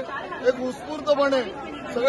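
A man speaking, with other voices chattering around him.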